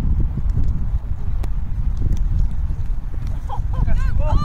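Wind buffeting the microphone in a low, unsteady rumble, with a few sharp taps and a short voice near the end.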